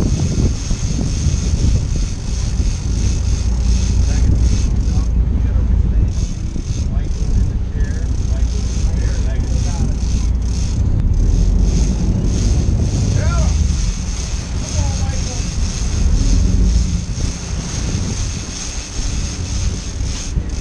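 Wind buffeting the microphone over the steady low rumble of a sportfishing boat's engines under way.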